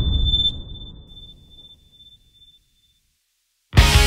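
A low rumble from the intro dies away over about two seconds, under a thin, high, steady ringing tone that fades out. After a brief silence, a rock band comes in loudly near the end with drums, electric guitars and bass.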